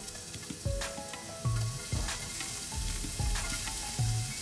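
Finely chopped onion sizzling as it fries in hot oil in a stainless steel pan, with a spatula stirring it and knocking against the pan a few times.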